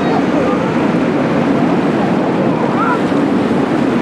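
Steady drone of the M.S. Oldenburg's diesel engines underway, mixed with water rushing past the hull and wind buffeting the microphone.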